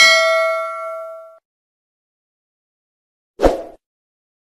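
Ding sound effect of a subscribe-button animation's notification bell: one bright bell-like strike that rings several clear tones and fades out over about a second and a half. A short, soft burst of noise follows near the end.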